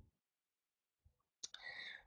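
Near silence, with a single faint click about a second and a half in, followed by a soft faint noise.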